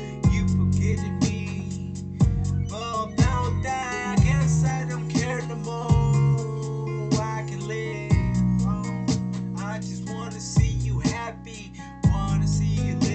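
A song demo playing back from a recording program: guitar over a steady beat, with a drum hit about once a second and long, deep bass notes.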